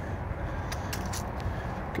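Steady low outdoor background rumble, with a few faint clicks.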